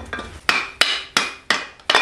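About five sharp metal-on-metal clanks, a third of a second or so apart, each with a short ring, as the steel camshaft is worked out of the Honda L15's cylinder head.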